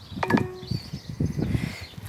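Google Maps navigation alert from a smartphone's speaker, a short chime about a quarter of a second in, signalling that the walker is apparently heading the wrong way.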